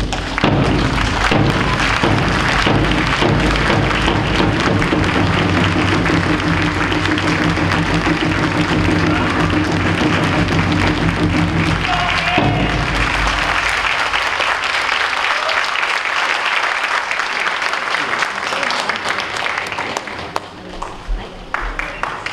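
Audience applauding over music with held low chords. The music breaks off about twelve seconds in, and the applause carries on, dying away near the end.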